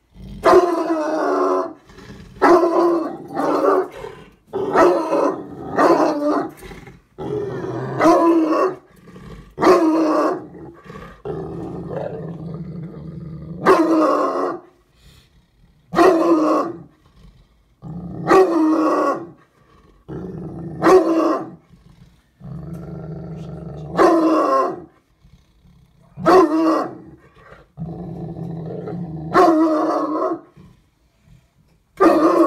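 Bloodhound barking over and over from inside a wire crate, a loud bark every second or two, with lower growling between some of the barks. The dog is worked up and guarding against a stranger close to the crate.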